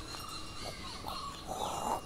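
Faint woodland ambience with a few scattered bird calls, and a short breathy rustle near the end.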